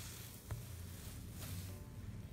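Faint sounds of a hand working crumbly coconut-and-semolina dough in a stainless steel bowl, with one small click about half a second in and a steady low hum underneath.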